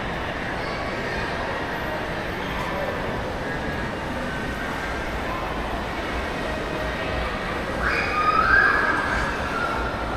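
Steady background noise of a large indoor mall concourse: an even hum and hiss with faint distant voices. About eight seconds in comes a short, louder sound that rises in pitch.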